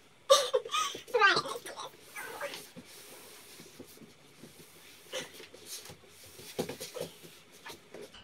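A woman's strained, wordless vocal sounds of effort in the first couple of seconds as she heaves a mattress off the bed. Then faint shuffling and bumping while the mattress is carried out of the room.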